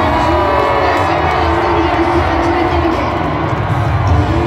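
Live concert sound picked up by a phone's microphone from the crowd. An amplified voice comes through the PA over bass-heavy music, mixed with crowd noise.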